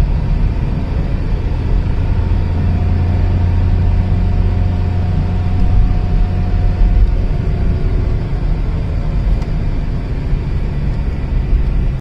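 Steady low rumble of a car driving, heard from inside the moving car's cabin: engine and road noise.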